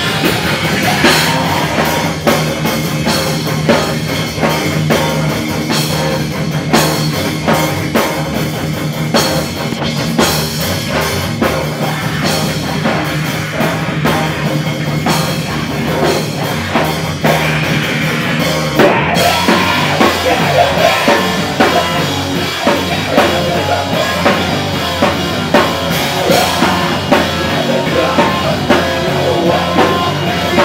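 A live rock band playing loud, with a drum kit pounding steadily under distorted guitar. The music breaks briefly and changes about two-thirds of the way through.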